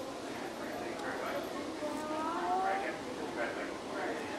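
Indistinct chatter of several overlapping voices, with no words standing out.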